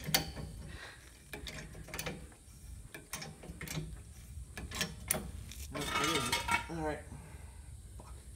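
Hydraulic floor jack being pumped by its handle: a string of irregular metallic clicks and knocks from the pump linkage.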